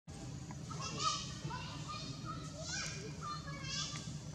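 Infant long-tailed macaque giving a run of high-pitched, wavering cries and squeaks, loudest about a second in and again near the end.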